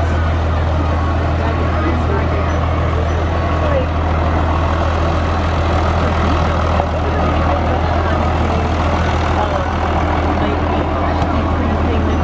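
Farm tractor engine running with a steady low drone as it tows a passenger wagon past, with people's voices in the background.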